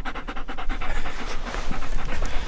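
A German Shepherd-type dog panting close to the microphone, in a quick, even rhythm of breaths.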